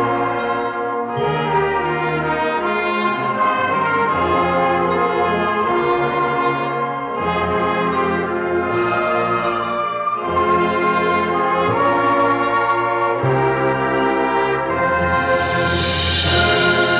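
High school concert band playing a slow passage of held chords with the brass to the fore, the chords changing every second or two. A high shimmer builds up near the end.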